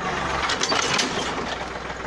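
Yanmar 1145 tractor's diesel engine running steadily under load while a subsoiler shank drags against a buried stone, giving a cluster of sharp knocks and grinding scrapes in the first second.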